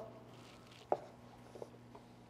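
Light handling noise as a foam tire-dressing applicator is picked out of a detailing bucket: one sharp knock about a second in, then a fainter tap, over a faint steady hum.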